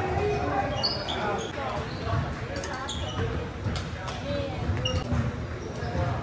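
Badminton rally in a large gym: a few sharp racket-on-shuttlecock hits, with short high squeaks of sneakers on the hardwood court in between.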